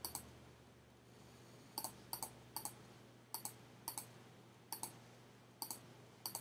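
Computer mouse button clicked about seven times, starting a couple of seconds in, each click a quick press-and-release pair. The clicks are quiet and spaced unevenly, dabbing a brush.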